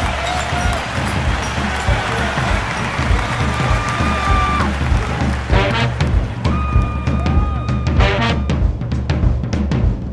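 Swing / jump-blues music with a driving drum beat and bass, and long held horn notes over the top.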